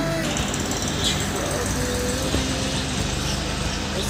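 Steady, even background noise with faint voices in the distance.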